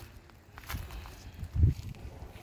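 Footsteps and handling sounds on grass and gravel: a few short low thumps, the loudest about a second and a half in, with light rustling. The small battery chainsaw is not yet running.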